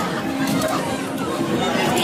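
Background chatter of people's voices mixed with the general din of a busy amusement arcade.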